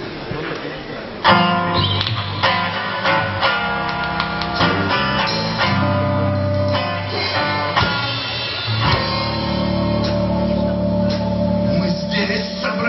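Live band music starts about a second in: an acoustic guitar strummed in a steady rhythm over held keyboard chords.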